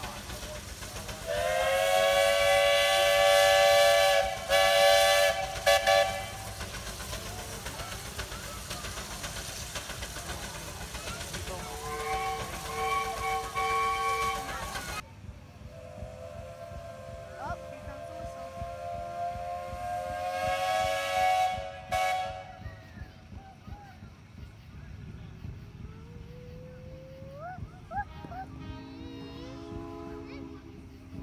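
Steam traction engine whistles blowing: a loud, steady blast of several tones at once starting about a second in and lasting about five seconds, a shorter whistle in the middle, and another long blast after a sudden cut, over a steady background noise.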